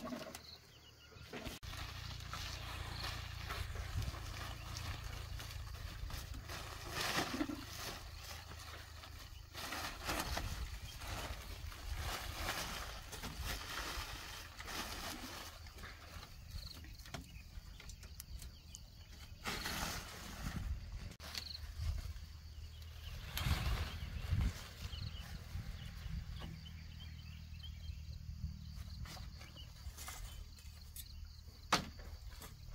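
Rustling and knocking of mats and a cloth tarp being laid out and smoothed on a raised wooden sleeping platform, over a steady low rumble.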